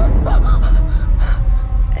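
A woman's frightened gasping breaths over a deep, steady low rumble of horror sound design.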